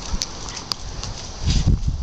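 Light footsteps and a few sharp clicks on pavement, with a brief low rumble about one and a half seconds in.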